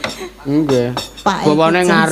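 A sinden's voice singing long, wavering held notes over a microphone, with sharp metallic clinks between the phrases.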